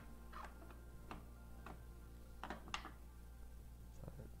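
Faint, scattered small clicks and rustles, about five in four seconds, from hands handling fly-tying materials and thread at the vise close to a lapel microphone, over a low steady hum.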